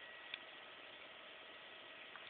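Faint, steady high-pitched tone from a self-oscillating Bedini SSG/Daftman pulse circuit and its coil as it runs, over low hiss, with one small click about a third of a second in.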